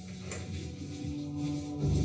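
Soft background music from the TV episode: low sustained tones holding steady, with a second tone entering about half a second in.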